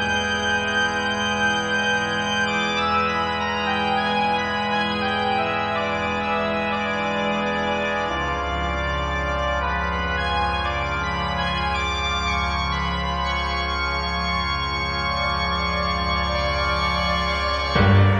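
Slow organ music of long sustained chords, with a deeper bass note coming in about eight seconds in.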